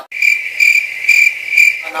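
Cricket chirping sound effect, the stock gag for an awkward silence: a high trill pulsing four times, cutting in abruptly and stopping just before speech resumes.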